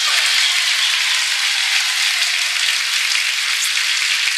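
Studio audience applauding steadily for a correct answer.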